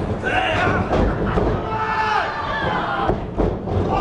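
Several heavy thuds of pro wrestlers' strikes and bodies hitting the ring, over shouting and yelling from a small crowd.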